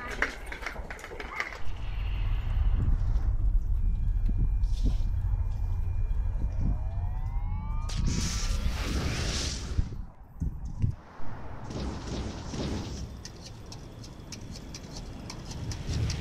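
Sci-fi movie sound effects: a long deep rumble of a hovering alien spaceship, with rising whines, then short noisy bursts like blasts.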